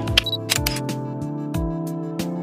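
Background music with a steady beat: a repeating low kick drum under sharp percussion ticks and held notes.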